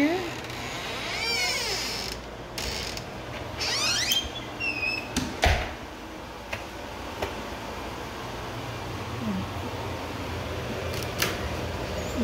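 Wooden closet door creaking on its hinges as it is swung, with a wavering squeak in the first few seconds, then a sharp thump about five and a half seconds in. Under it runs a steady low hum from the oven running its self-clean cycle.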